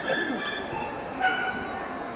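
A dog barking twice in high yaps about a second apart, over the steady murmur of a crowded hall.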